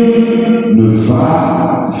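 A man's voice singing a slow, chant-like line into a microphone, holding long steady notes.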